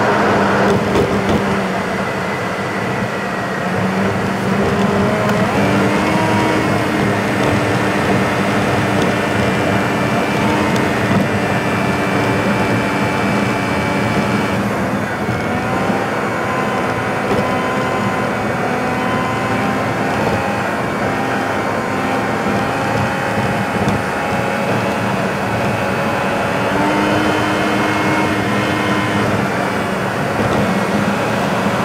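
A car driving at a steady speed, heard from inside the cabin: steady engine and tyre road noise with humming tones that shift in pitch now and then.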